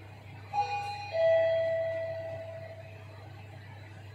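LG Di1 lift's arrival chime sounding as the car reaches the floor: a two-tone ding-dong, a higher note and then a lower one that rings out and fades over about two seconds.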